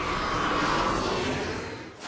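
Twin-engine jet airliner passing low over a runway: a steady rush of jet engine noise that fades out near the end.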